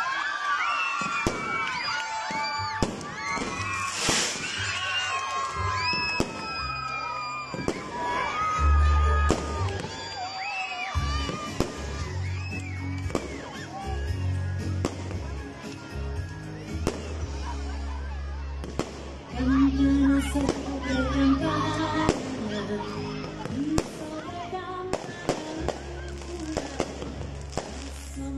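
Aerial fireworks going off overhead, a run of sharp bangs and crackles mixed with people's voices. Music with a deep, steady bass comes in about nine seconds in.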